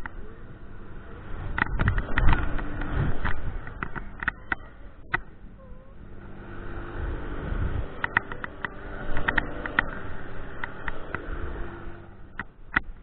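Wind rushing over the microphone of a camera riding a swinging Mondial Furioso gondola. The rush swells twice as the gondola swings through its arc, with many sharp clicks and a faint steady hum underneath.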